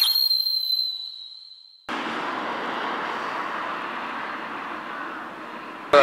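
An edited logo-transition sound effect: a sudden, high ringing tone that fades away over about two seconds. It cuts to a steady outdoor background hiss.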